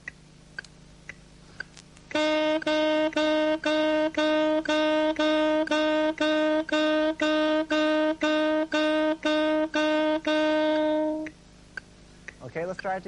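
A metronome ticks faintly about twice a second. Then a saxophone plays a long run of short, evenly repeated notes on one pitch in time with it, each note started with the tongue against the reed, as a tonguing (articulation) exercise. The notes stop about a second before the end.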